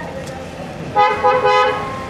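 A car horn honks for about a second, starting about a second in, over street background noise.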